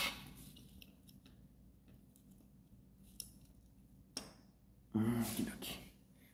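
Faint, scattered small clicks and taps of electronic components and a printed circuit board being handled on a hard tabletop during kit assembly, with a short vocal sound near the end.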